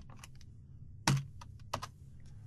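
Computer keyboard keys being typed: a few quick keystrokes at the start, a louder single keystroke about a second in, then a few more.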